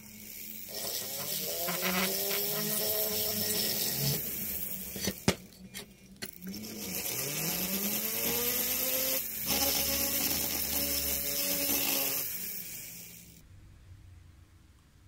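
Small handheld rotary tool with a fine bit grinding the aluminium of a scooter engine crankcase, scuffing the surface so filler will grip. It runs twice, a few seconds each time, its whine sliding up and down in pitch as the bit bites, over a high grinding hiss.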